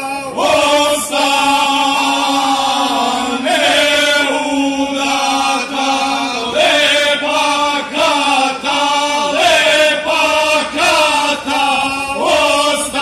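Male folk vocal group singing unaccompanied through a stage PA: a steady held low note under a melody that bends and moves in phrases of a few seconds.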